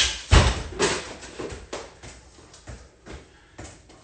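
Footfalls and soccer ball touches on a concrete floor: a heavy thump about a third of a second in, then a string of lighter taps and steps.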